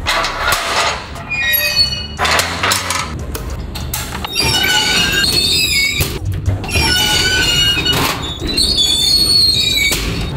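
Background music with metal knocks and squeals from an iron grille door's sliding bolt and a collapsible scissor-type lift gate being worked open. The high squeals come in several short runs.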